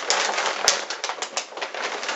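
Crinkling and rustling of a white packaging bag as a hand rummages inside it for a boxed glass, with many small crackles and one sharp click about two thirds of a second in.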